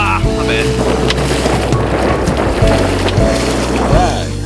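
Background music, with water splashing as a hooked fish thrashes at the surface beside a landing net.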